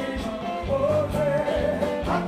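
Live Haitian konpa (compas) band music: a held, wavering melody line over bass and a steady drum beat.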